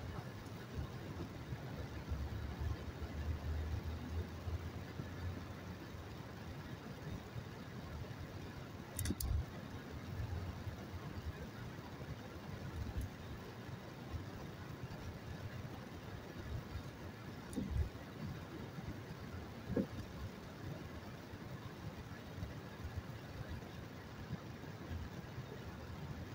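Car driving through city traffic, heard from inside the cabin as a steady engine and road-noise rumble, with a couple of brief knocks along the way.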